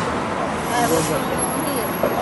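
Road traffic noise, a motor vehicle going by, under people talking and laughing.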